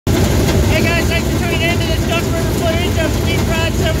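Race car engines running in a dirt-track pit area, a loud, steady low rumble under a man's voice.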